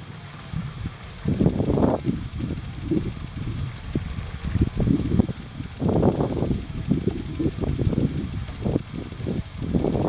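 Wind buffeting the microphone in irregular gusts, a low rumble that swells and fades repeatedly from about a second in.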